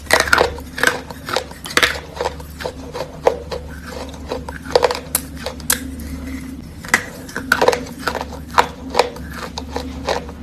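Close-up biting and chewing of wet chalk: irregular crisp crunches and crumbling clicks, several a second, as pieces are bitten off and chewed.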